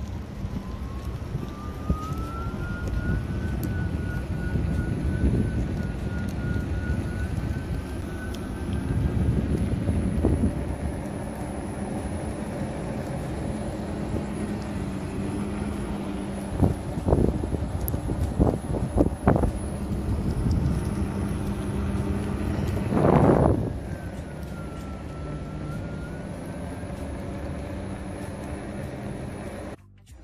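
Wind noise on the microphone and tyre rumble from a ride on an iNMOTION V8 electric unicycle, with a faint whine from its 800 W wheel-hub motor that rises and falls in pitch with speed. A few sharp knocks come a little past halfway, and a louder surge of rumble follows a few seconds later.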